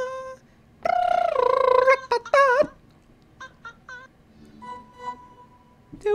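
A pet bird calling: two long, wavering, high-pitched calls in the first three seconds, then a few short squeaks and a faint thin whistle near the end.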